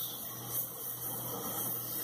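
Handheld gas torch flame hissing steadily as it heats silver in a melting dish, with a low steady hum underneath.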